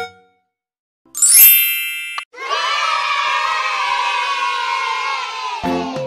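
A bright chime sound effect rings out about a second in, followed by a recorded crowd of children cheering and shouting for about three seconds; cheerful music starts again near the end.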